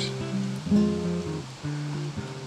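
Background music: acoustic guitar playing a few held notes that change a couple of times.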